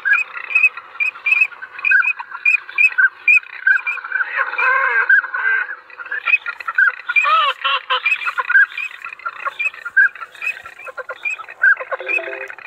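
Duck calls: an evenly repeated string of short high calls, about three a second, with fuller, lower calls joining in around four to five seconds in and again around seven seconds in.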